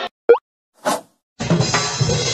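Cartoon sound effects: a short, loud rising blip, then a brief hissing burst, followed after a short silence by orchestral cartoon score starting up.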